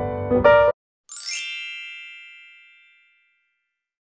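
Piano background music that cuts off abruptly less than a second in, followed about a second in by a bright sparkling chime sound effect that rings and fades away over about two seconds.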